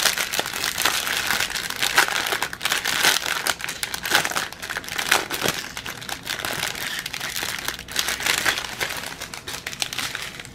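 Small plastic zip-lock bags of diamond-painting drills crinkling as they are handled and turned over, a continual irregular crackle of plastic.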